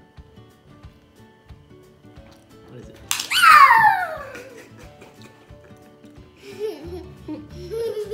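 Background music with a steady beat throughout. About three seconds in, a sharp clap and a girl's loud, high-pitched squeal that slides down in pitch over about a second; giggling and laughter follow near the end.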